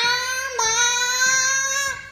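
A young boy imitating a car engine with his voice: one long, high held note that rises slightly, with a brief catch about half a second in, stopping just before the end.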